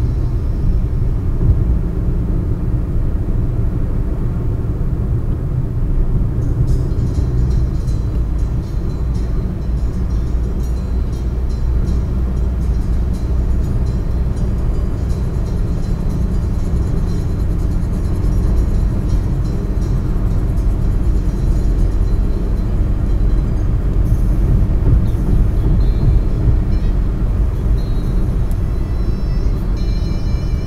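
Steady low road rumble of a car cruising at highway speed, heard from inside the cabin, with faint music underneath.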